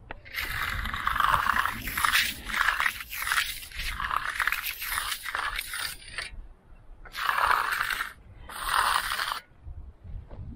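A steel hand edging tool scraping along the edge of a freshly floated concrete slab while the edge is touched up. There is a long run of back-and-forth strokes, then two short strokes near the end.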